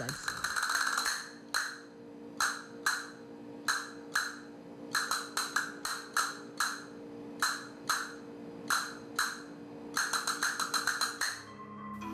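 Castanets played solo: a quick run of clicks at the start, then single sharp clicks in an uneven rhythm, with short rolls around five seconds in and a faster run near the end.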